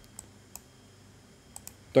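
Computer mouse clicking as a piece is moved on an on-screen chessboard: four light, short clicks, one about a fifth of a second in, one about half a second in, and a quick pair about 1.6 s in.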